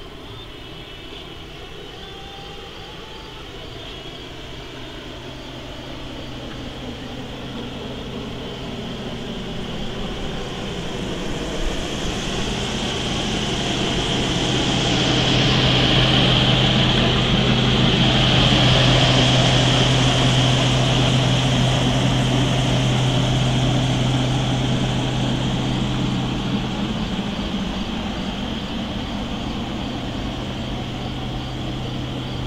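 A propeller airplane passing by with a steady low drone. It swells slowly to its loudest about halfway through, then fades away.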